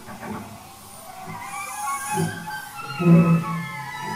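Experimental chamber music: a live ensemble of cello, saxophone, voices and prepared piano playing slow, gliding, animal-like tones over low swells, with the loudest swell about three seconds in.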